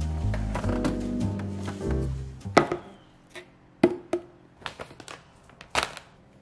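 Background music with a bass line for about the first two seconds, which then stops. After that come about half a dozen sharp knocks and clatters as plastic food tubs are handled in a fridge and a yogurt tub is set down on a wooden counter.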